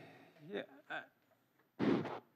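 A short, loud muffled thump on a desk microphone near the end, after a couple of spoken words.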